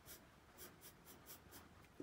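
Near silence with faint, quick scratchy rustles, several a second: handling noise from a plush toy being moved close to the microphone.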